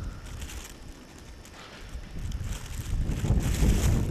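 Wind rumbling on the microphone, building in the last second or two, with a hiss over the top.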